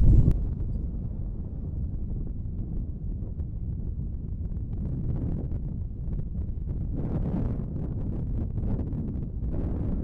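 Strong wind buffeting the microphone in a steady low rumble, with more hiss added from about seven seconds in as the wind picks up.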